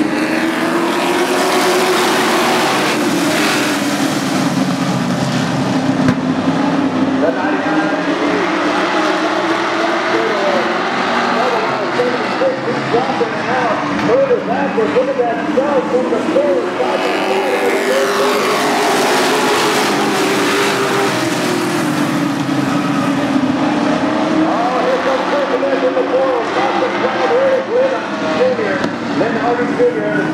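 A pack of race trucks running around a short oval, a steady mass of engine noise that swells as the field comes by, about three seconds in and again past the halfway mark, then eases off. A voice, faint under the engines, runs through it.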